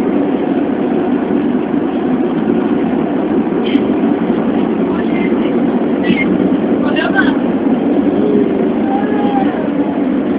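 Lisbon Metro ML90 train running, heard inside the passenger car as a steady rumble, with brief high squeaks and clicks about four, six and seven seconds in.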